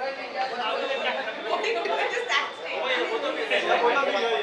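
Several voices talking over one another: general chatter in a large room.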